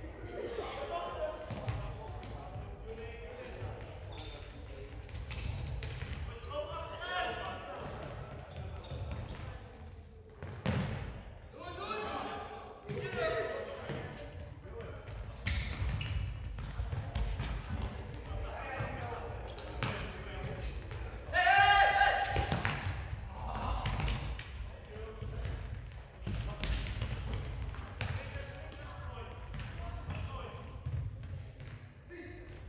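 Futsal match in a sports hall: players calling and shouting to each other, with a loud shout a little after two-thirds of the way through, over repeated thuds of the ball being kicked and bouncing on the hall floor. The sound echoes in the large hall.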